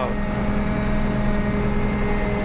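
Combine harvester running steadily as it drives, heard from inside the cab: an even drone with a few steady humming tones.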